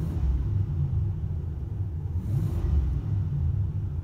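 Oldsmobile 307 V8 engine of a 1985 Delta 88 idling steadily with a low, slightly pulsing rumble, heard from inside the car's cabin.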